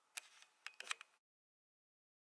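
A few sharp clicks and short rustles close to the microphone within the first second, then the sound cuts off abruptly to dead silence.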